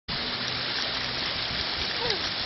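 Steady hiss and splatter of small splash-pad water jets spraying up through the pad.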